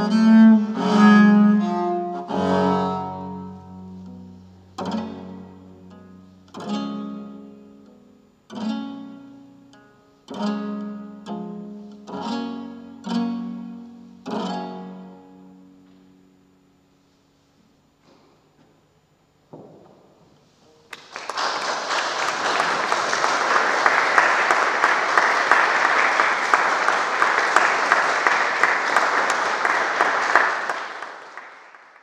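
Solo viola da gamba playing a run of separate bowed notes and chords, each left to ring and die away, closing the piece about halfway through. After a few seconds of quiet, audience applause starts about two-thirds of the way in and runs on steadily.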